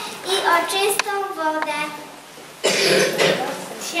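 A child's voice reciting rhymed verse in short phrases, then a brief pause. Near the end comes a noisy burst about a second long.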